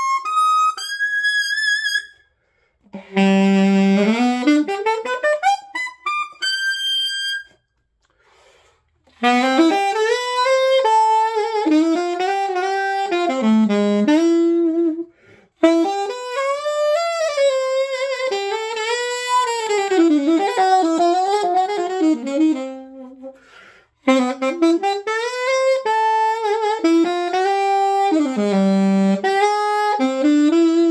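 Alto saxophone played through a composite reproduction of a Meyer 9 small-chamber, medium-facing mouthpiece: jazz phrases with fast runs, some climbing to high notes, broken by a few short pauses for breath. A pretty big sound.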